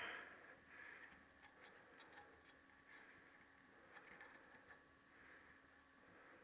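Near silence, with a few faint light ticks of a small steel pick against the valve collets and spring compressor as the collets are seated on a valve stem.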